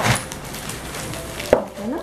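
Plastic wrapping rustling and crinkling as wood-framed jewellery display boards are handled, with one sharp knock about one and a half seconds in.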